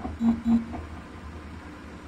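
Two short, identical electronic beeps close together in the first second, over the steady low running hum and water of a Bosch Serie 8 front-loading washing machine turning its drum in the rinse.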